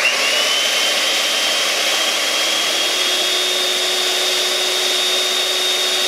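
Electric hand mixer motor switched on and running at high speed, spinning a whisk attachment with a cardboard roll that winds yarn into a ball. It starts abruptly, its whine rising quickly as it spins up, then holds steady, edging slightly higher.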